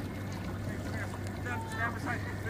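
Faint voices of other people carry over a steady low hum and outdoor background noise; the voices come about a second in.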